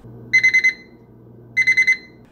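Electronic kitchen timer beeping: two quick runs of about four high beeps, a little over a second apart, signalling that the baking time is up.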